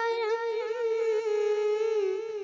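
A boy's voice singing a naat unaccompanied into a microphone, holding one long note with small wavers in pitch.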